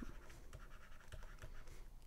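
Faint scratching and light ticking of a stylus writing by hand on a tablet.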